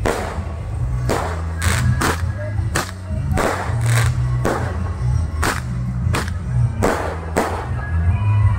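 Aerial fireworks exploding overhead, about a dozen sharp bangs at uneven intervals, over loud music with a heavy, steady bass.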